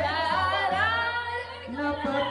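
A woman singing into a handheld microphone, her voice amplified through a sound system over a steady low backing sound.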